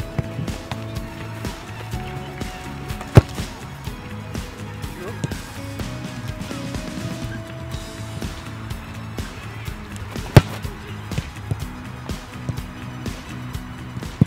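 Background music, with two sharp thuds about seven seconds apart, about three seconds in and about ten seconds in: a boot striking a rugby ball on conversion kicks.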